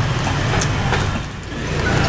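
Street traffic: a steady low engine rumble with a general background hiss, dipping briefly late on.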